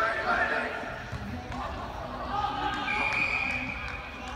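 Rugby players shouting on the pitch, and near the end a referee's whistle blown in one steady blast of about a second, stopping play for a knock-on.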